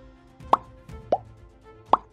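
Three short plop sound effects, a little over half a second apart, over steady background music.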